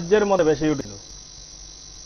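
A man's voice speaking for under a second, then a pause in which only a steady high hiss of background noise remains.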